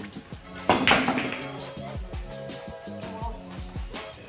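Background music with a steady beat; a little under a second in, a sudden loud clack of pool balls knocking together from a cue shot, the loudest sound here.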